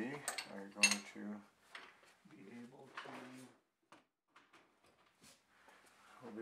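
Metal parts and tools clinking at a lathe: a few sharp clicks in the first second and two short low hums in the first half, then only scattered faint ticks.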